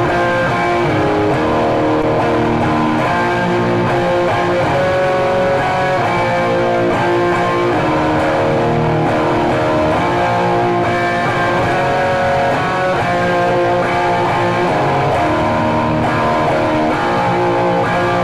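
Electric guitar music: a continuous melodic piece of sustained notes played at a steady level.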